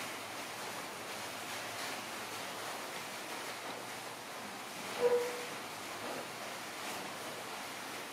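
Steady background hiss, with one short pitched sound about five seconds in.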